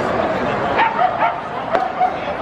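A pitched baseball popping into the catcher's mitt once near the end, taken without a swing, over ballpark crowd chatter. A few short, high yelping calls come just before it.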